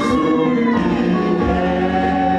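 Gospel worship song: a man singing lead into a handheld microphone with a group of voices singing along, steady and loud.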